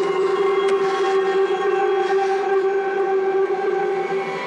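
Neurofunk drum and bass mix in a breakdown: a steady, sustained electronic drone holding one note with its overtones, with the drums and deep bass dropped out.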